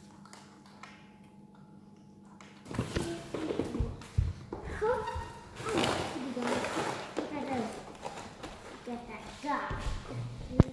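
Faint tapping over a steady low hum. About three seconds in, children's voices start talking excitedly, with a few sharp knocks from a cardboard toy box being handled.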